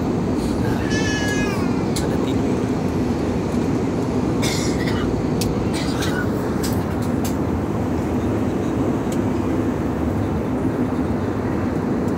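Steady low rumble of an airliner cabin: engine and air-system noise. About a second in, a brief high, wavering squeal glides up and down, and a few sharp clicks and rustles come between about four and six seconds in.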